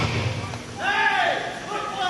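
Rock entrance music cutting out about half a second in, then a man's voice calling out a long, drawn-out word.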